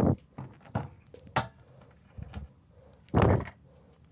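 Aluminium finned heatsink being set down and shifted into place on an amplifier case panel: a thump at the start, a few light clicks, and a louder clunk about three seconds in.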